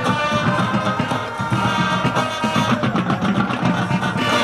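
High school marching band playing its field show: brass and drums sounding together at an even, full level.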